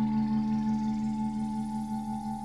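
Background drone music of several steady ringing tones, the lower ones slowly fading while a higher tone grows stronger in the second half.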